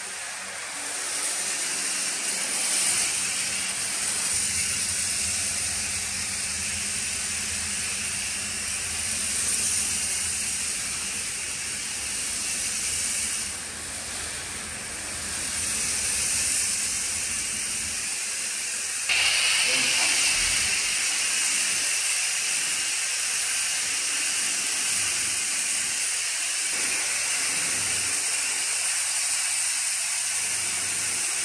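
High-pressure foam lance spraying snow foam onto a van: a steady hiss of spray, growing louder and brighter about two-thirds of the way through.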